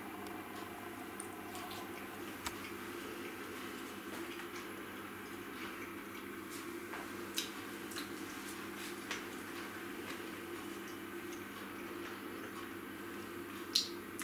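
Quiet chewing of a bite of steak, with a few faint, scattered mouth clicks over a steady low room hum.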